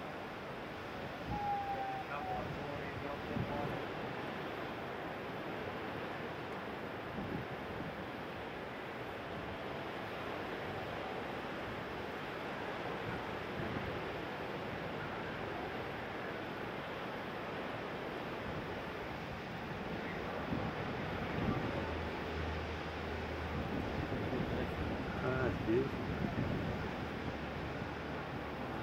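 Steady wash of breaking ocean surf with wind on the microphone, and faint distant voices now and then.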